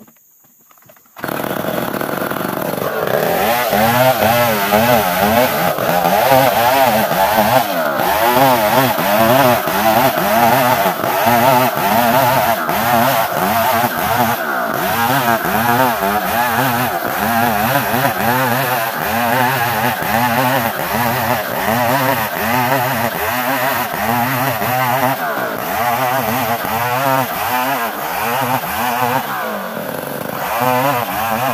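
Chinese-made STIHL-branded chainsaw cutting along a plank of ulin (Borneo ironwood), held at high revs with the engine pitch wavering steadily as the chain bites. It comes in suddenly about a second in and rises to full speed over the next couple of seconds.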